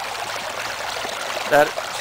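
River water rushing steadily through a homemade gold sluice box, pouring over its riffles in an even flow.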